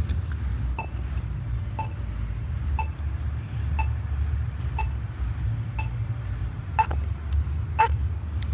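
A short electronic beep repeating about once a second, like the locator tone of a pedestrian crossing signal, over a steady low rumble.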